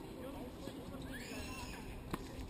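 Distant voices on the courts, with a high call that rises and then falls in the second half.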